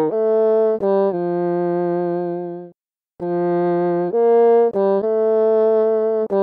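Machine-learning synthesis of a solo bassoon, trained on real bassoon performances, playing a melody from a score it has never seen. Held notes change pitch smoothly, a brief rest comes about three seconds in, and quicker notes follow.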